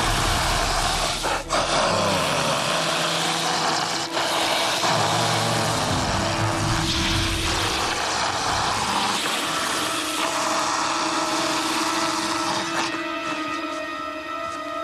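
Steady rushing noise, the sci-fi sound effect of a Wraith feeding in reverse and giving life back through his hand, over a held note of the dramatic score; the rushing fades near the end.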